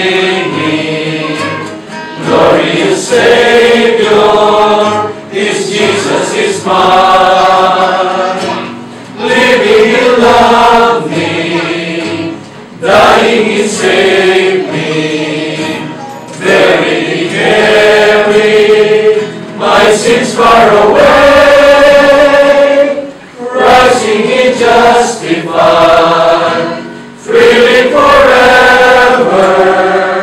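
A group of voices singing a worship song, led by a man, with a nylon-string classical guitar accompanying. It goes in sung phrases of a few seconds with short pauses between them.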